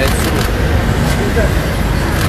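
A steady low rumble of background noise, with a few short spoken sounds near the start and a little past halfway.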